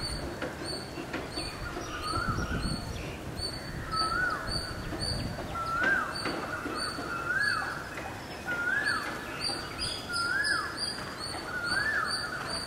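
A bird calling over and over, a short rising-then-falling note repeated about every second and a half. Behind it are faster, higher chirps repeating about twice a second.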